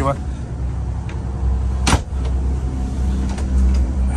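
Steady low drone of the motor yacht's machinery heard inside a cabin, with a single sharp knock about halfway through.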